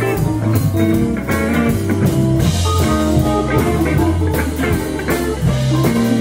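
Live blues band playing: electric guitars over a steady low bass line and drum kit, with the drums striking regularly throughout.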